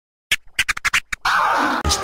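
DJ turntable scratching in a hip-hop radio-station jingle: a quick run of about seven short scratch strokes, then one longer sustained sound from just past a second in.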